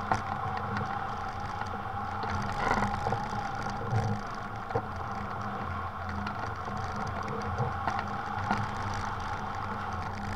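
Steady rush of air past a hang glider in flight, picked up by a camera mounted on the glider's frame, with a few light knocks.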